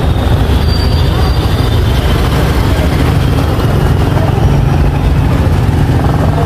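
Loud, steady low rumble of engine and street-traffic noise, with a Yamaha NMAX scooter's small single-cylinder engine idling close by.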